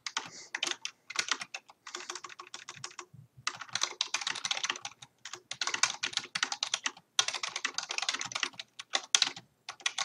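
Fast typing on a computer keyboard: rapid key clicks in bursts, broken by a few short pauses.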